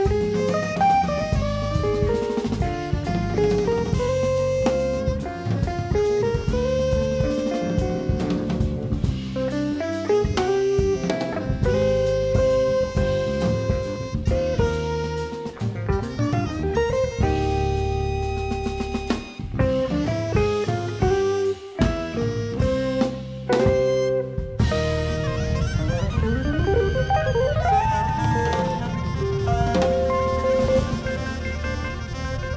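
A live jazz-fusion quartet playing: soprano saxophone lines over electric guitar, bass guitar and drum kit. Near the end of the first half of the second half the band breaks off briefly twice, and a rising slide comes a few seconds before the end.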